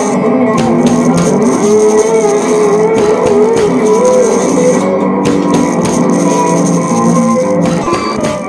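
Funky blues instrumental break: guitar over bass and drums, with a lead line bending and wavering in pitch through the middle of the passage.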